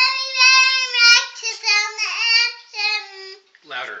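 A young girl singing in a high, thin voice, holding long notes and sliding between pitches for about three and a half seconds. An adult says "Louder" near the end.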